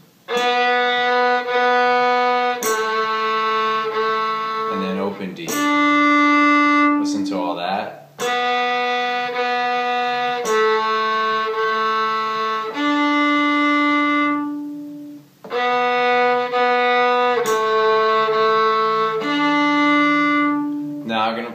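Fiddle played slowly, long bowed notes in a looped phrase: second finger on the G string bowed twice, first finger on the G string bowed twice, then the open D string held. The phrase runs through about three times with short breaths between repeats.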